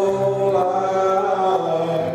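Slow worship music: voices singing long held notes together, the notes changing about every second.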